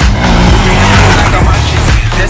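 Background music over an off-road motorcycle engine, with a rush of engine and tyre noise that swells and fades about a second in, like a bike passing.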